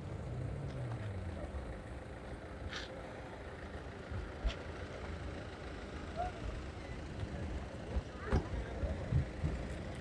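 Ambience of a busy car lot: a steady low vehicle rumble, with an engine note falling in pitch in the first second or so, murmur of distant voices, and a few short knocks.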